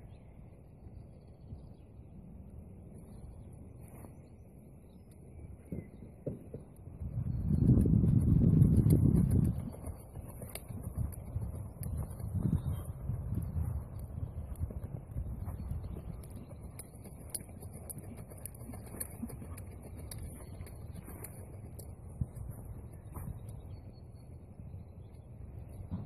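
A horse cantering on an arena surface, its soft hoofbeats heard as it passes closer, with birds singing in the background. A loud low rumble lasts about two seconds, a few seconds in.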